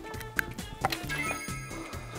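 Edited-in background music with a few short, sharp clicks in the first second and ringing high tones later on.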